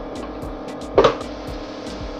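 Background music with a steady beat. About a second in comes a single clunk as the glass blender jar is seated on its base.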